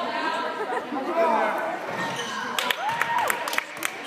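Spectators' voices chattering in an echoing school gymnasium. About two and a half seconds in, a run of sharp knocks begins: the basketball and players' shoes on the hardwood court as a free throw is taken and play resumes.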